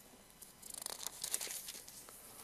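Thin Bible pages being leafed through and turned by hand: a run of soft, papery rustles starting about half a second in.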